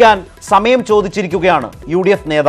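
A man's voice reading the news in Malayalam, in short, clipped phrases.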